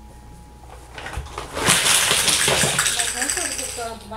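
Plastic toy building blocks poured out onto a tile floor: a dense clatter of many small pieces hitting and scattering, starting about one and a half seconds in and lasting about two seconds.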